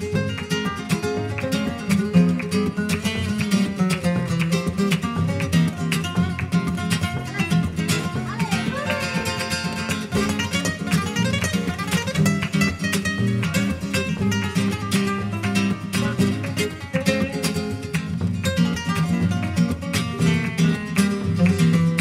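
Flamenco played live on acoustic guitars: a continuous stream of quickly picked notes over a low chordal accompaniment.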